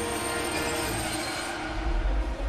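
Running noise of a moving passenger train heard from inside the carriage: a steady rushing of wheels on rails, with a deep rumble rising near the end.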